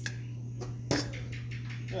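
A single sharp click about a second in, over a steady low hum, with a couple of fainter ticks.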